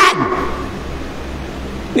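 A pause in a man's lecture: his last word trails off with a falling pitch just at the start, then only a low steady hum remains until he speaks again at the end.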